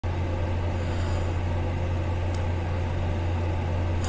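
A steady low-pitched hum, with a brief faint click about two and a half seconds in.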